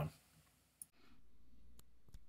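The tail of a spoken word, then a short click and quiet room tone with another faint click near the end.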